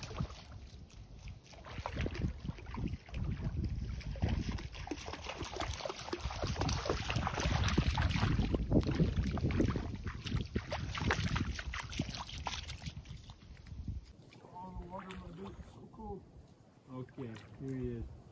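Water splashing and sloshing as a man and a dog wade through a shallow canal, loudest in the middle and dying down about fourteen seconds in.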